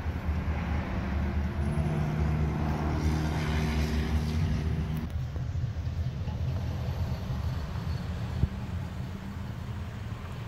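Chevy Camaro Z28's V8 running as the car pulls away, a steady low engine rumble. A humming tone rides over it from about two seconds in and cuts off at about five seconds. There is a single sharp tap at about eight and a half seconds.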